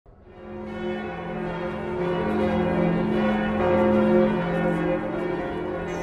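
Bells ringing in a continuous wash of overlapping, sustained tones, fading in over the first second.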